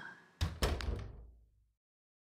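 A door being shut: a thud about half a second in, a second knock just after, and a brief rattle before it stops.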